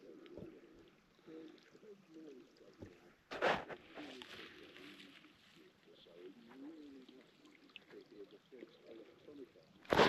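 Faint, indistinct voice sounds, low and wavering, with one short breathy noise about three and a half seconds in.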